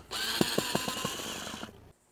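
Black & Decker cordless drill running on a screw, its motor whining, with a rapid run of clicks in the middle as the bit slips and cams out of the screw head, stripping it out. The drill stops shortly before the end.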